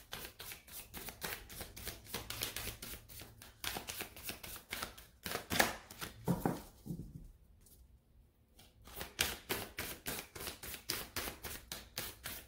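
A deck of oracle cards being shuffled by hand: a quick run of clicks, about four a second. About seven seconds in there is a pause of under two seconds, then the shuffling starts again.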